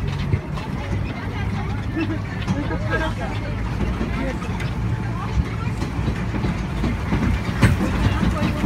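A vehicle's engine running with a steady low hum while riding along, with faint voices underneath.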